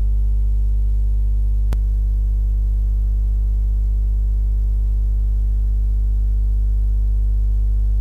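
Loud, steady low electrical hum, the kind mains interference leaves on a recording, with a single sharp click about two seconds in.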